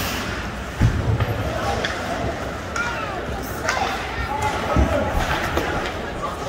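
Indoor ice hockey rink during play: a noisy hall background with scattered shouting voices, and a low thump about a second in and another near five seconds.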